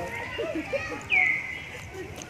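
A high-pitched animal call about a second in, dropping sharply in pitch and then holding one note for most of a second, the loudest sound here, over background voices.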